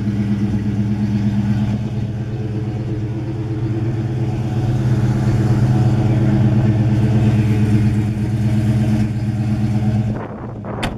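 Oldsmobile 425 Super Rocket V8 with factory dual exhaust idling steadily, a low, even engine note, a little louder in the middle.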